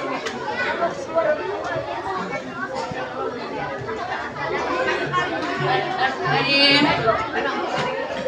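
Many children's voices chattering at once, with one voice rising louder near the end.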